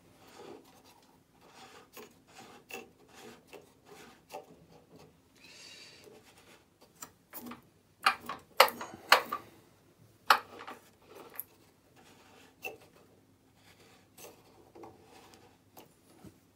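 Tailstock of a Parkside benchtop wood lathe being wound in by hand and tightened against a piece of wood: quiet rubbing and scraping of metal on metal and wood, with scattered clicks and a few sharp knocks around the middle. The lathe is not running.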